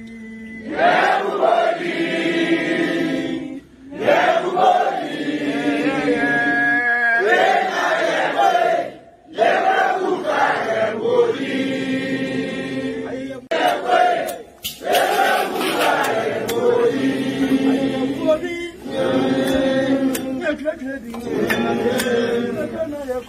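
A group of voices chanting together in repeated phrases of about two to three seconds, each followed by a brief pause, with a couple of sharp clicks around the middle.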